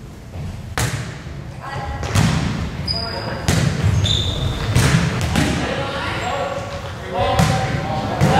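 Volleyball being served and played in a rally in a gym: several sharp smacks of hands and arms on the ball, echoing in the hall, with voices calling out between hits.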